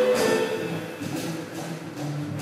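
Jazz quartet playing live: French horn with stage piano, double bass and drum kit. Loudest at the start, then softer.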